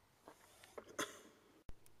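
A few faint clicks and taps of handling, with a sudden brief break in the sound near the end.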